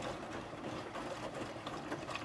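Front-loading washing machine running mid-cycle: a steady motor hum.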